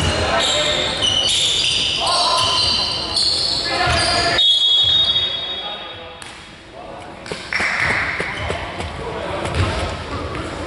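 A basketball being bounced on a gym floor with voices calling out across the court, the sounds echoing in a large sports hall.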